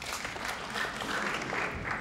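Large theatre audience applauding, breaking out suddenly and easing off near the end.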